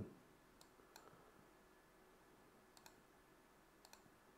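A few faint clicks of a computer mouse, about five, two of them close together near the end, over near-silent room tone.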